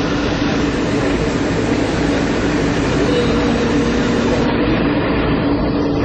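Walt Disney World monorail train standing at the station, heard inside the cabin: a steady mechanical hum with a low drone, and a fainter higher tone joining about halfway.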